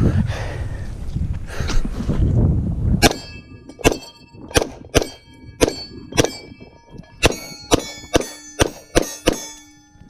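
Glock pistol fired about a dozen times in quick succession at steel targets, roughly two shots a second, each crack followed by the ring of the struck steel plates. The string ends with the magazine run empty.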